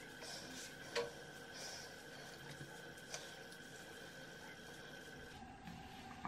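Faint soft swishes of a cotton pad being wiped over facial skin, with a small click about a second in and another about three seconds in, over a faint steady high whine that stops shortly before the end.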